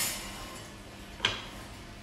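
A baking dish being set and slid onto a metal oven rack: a knock at the start and a sharper clink about a second in.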